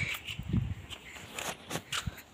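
Faint footsteps and handling noise from a phone being carried while filming, with a few soft clicks a little before the end.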